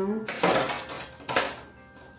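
Makeup bottles and compacts clattering as they are handled on a bathroom counter: two short bursts of clinking and rattling, about half a second and a second and a half in.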